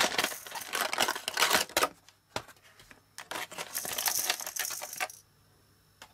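Stiff plastic blister packaging crackling and crinkling as hands pull it apart, in two bursts with a short pause between, stopping about a second before the end.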